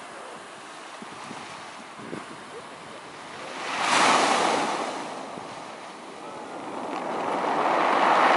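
Ocean surf breaking onto a pebbly, rocky shore: a steady wash of waves that surges to a peak about four seconds in and builds again near the end.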